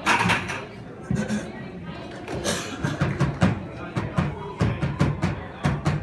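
A plastic bucket played by hand as a drum: an uneven run of short, low thumps, about three a second, starting about a second in.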